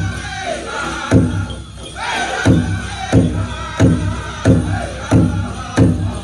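Powwow drum group singing a chicken dance song: a big drum struck in loud, steady beats about one and a half times a second, under high-pitched group singing.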